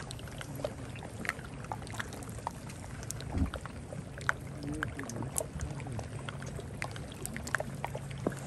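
Melting glacial ice floes popping and crackling in irregular, scattered clicks as locked-up air escapes from the ice. A low steady hum runs underneath, with one dull thump about three and a half seconds in.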